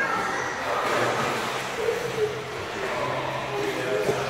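Overlapping children's voices and shouts echoing around an enclosed indoor pool room, a steady noisy hubbub with no one voice standing out.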